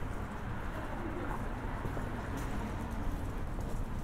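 A dove cooing in short low notes, over a steady low outdoor rumble.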